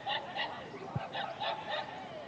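Birds calling: a quick run of short, repeated calls, several a second.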